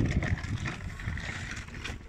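Small plastic-wheeled children's tricycle rolling over a rough dirt and gravel track: a crunching, rattling rumble with a thump right at the start.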